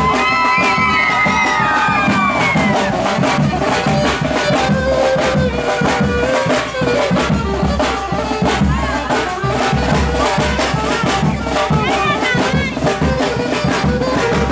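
A street band playing dance music loudly and without a break: a saxophone melody over a steady drum beat.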